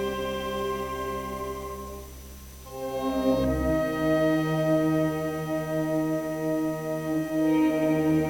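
Symphony orchestra playing the opening bars of an arrangement of a Korean folk song, with long held chords. The chords soften about two seconds in, then a fuller, louder chord comes in about three seconds in and is held.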